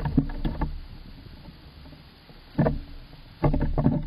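A squirrel moving about inside a wooden nest box and rubbing against the camera, making scuffing and knocking noises in three bursts: at the start, just before three seconds in, and near the end.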